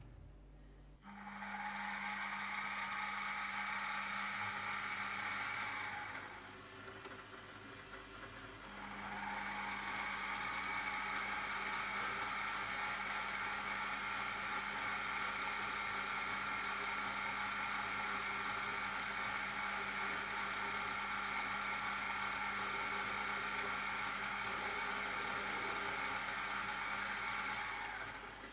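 Mini mill spindle motor running steadily with a small twist drill boring a hole into a brass bush, a steady whine with fixed tones. The sound drops away for a couple of seconds about six seconds in, then picks up again.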